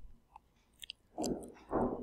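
A pause in speech: mostly quiet, with a few faint mouth clicks, then two short murmured voice sounds in the second half that run into speech.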